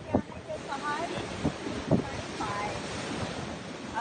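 Wind blowing across a phone microphone outdoors, a steady rushing noise, with a few short thumps, one near the start and one about two seconds in.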